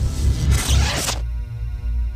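Logo sting: a noisy whoosh sweep over a deep bass rumble, ending a little over a second in and giving way to a held, ringing chord.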